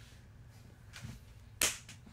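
A single short, sharp swish sound effect about a second and a half in, marking a cut in the edit, over quiet room tone.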